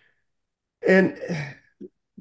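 A man's voice: one short, hesitant vocal sound about a second in, after nearly a second of silence, with a small click just after it.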